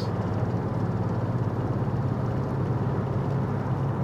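Steady low hum of road and engine noise inside a moving car's cabin.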